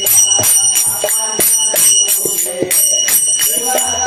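Devotional kirtan music led by small brass hand cymbals (kartals) ringing in a steady beat of about four strikes a second, over lower pitched instrumental notes.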